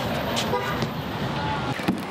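Steady city traffic noise, with a single sharp knock near the end.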